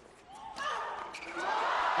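A racket strikes a tennis ball on a second serve that goes into the net for a double fault. A murmur of crowd voices then builds in reaction.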